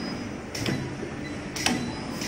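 Pneumatic cylindrical screen printer for plastic cups cycling: two sharp clacks about a second apart, each with a short burst of air hiss, over a steady machine hum.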